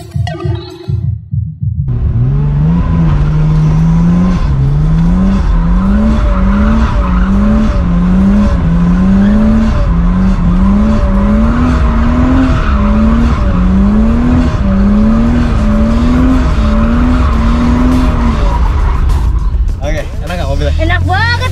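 Nissan Cefiro drift car's engine revving up and falling back again and again, a little faster than once a second, as the car drifts in circles with its rear tyres squealing.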